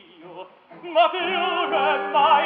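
Operatic singing with a wide vibrato over an orchestra, from a 1958 live opera recording. After a soft, quiet first second, the voices and orchestra come in loudly at about one second and hold on.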